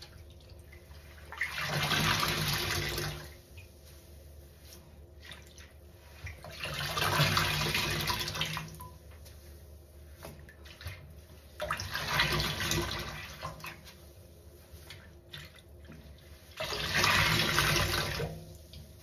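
A large sponge soaked in soapy rinse water being squeezed and pressed four times in a stainless steel basin, each squeeze a squelching gush of water lasting a couple of seconds, about five seconds apart.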